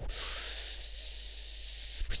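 A steady hiss lasting about two seconds, starting abruptly and ending as abruptly, a sound effect made by mouth over a faint low hum.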